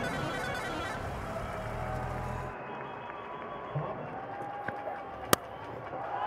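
Cricket stadium crowd noise and applause, which drops abruptly to quieter ground ambience about two and a half seconds in, then a single sharp crack of a bat hitting the ball near the end.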